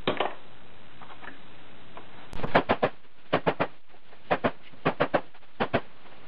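A hammer strikes a punch to drive the secondary coil out of a microwave oven transformer's steel core. There is one knock at the start, then after about two seconds a run of quick strikes in clusters of two to four.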